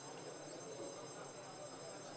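Faint room tone of a large hall, with a thin, steady high-pitched whine made of several tones held together.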